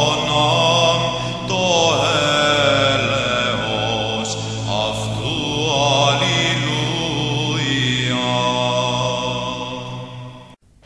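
Orthodox church chant: a melismatic vocal melody sung over a steady held drone.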